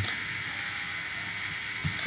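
Room tone: a steady hiss with a faint hum underneath, with no other sound standing out.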